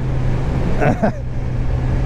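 Kawasaki Z900's inline-four engine running at a steady cruise, its pitch holding level, under constant wind noise. There is a brief vocal sound from the rider about a second in.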